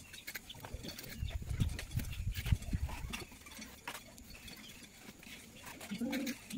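Plastering trowel scraping and tapping on wet cement render, an irregular run of short scrapes and clicks, with dull low bumps through the first half.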